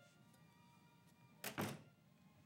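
A wooden door shutting with a heavy double thunk about a second and a half in, over faint, sustained film-score music.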